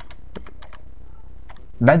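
Computer keyboard typing: a run of separate, unevenly spaced key taps as a 16-digit card number is keyed in.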